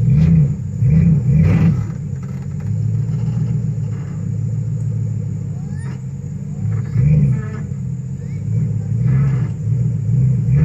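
Pickup truck engine running under load as the truck pulls on a rope tied to a tree, revving up in several surges over a steady low rumble.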